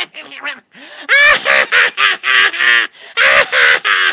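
Cackling, chattering creature voice given to the Leprocaun: loud, rapidly warbling calls in several bursts, one rising in pitch about a second in and another burst near the end.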